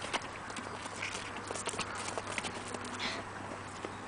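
A horse nosing and mouthing at a plastic compote squeeze pouch held out to it: a run of small irregular clicks and crackles, with a short hiss about three seconds in.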